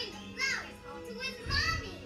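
Cartoon soundtrack from a television: background music with two short, high-pitched voice calls over it.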